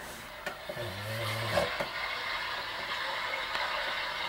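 Steady whooshing room noise, growing a little louder about a second and a half in. A brief low hum of a man's voice comes about a second in.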